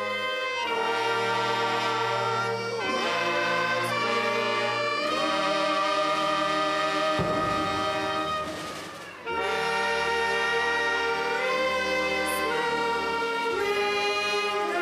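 A school band led by brass, trumpets and trombones, plays the school alma mater in long held chords, with the graduating class singing along. The music thins out briefly about eight seconds in, then comes back in full.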